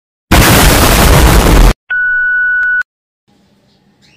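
Intro sound effects for an animated subscribe button: a loud burst of noise lasting about a second and a half, then a steady high beep about a second long with a click near its end.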